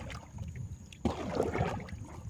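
Wooden river boat underway: water washing along the hull over a low rumble, louder from about a second in.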